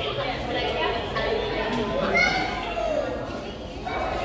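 Background chatter of aquarium visitors, with children's voices among it. One high voice rises briefly about two seconds in. No single voice is close enough to make out words.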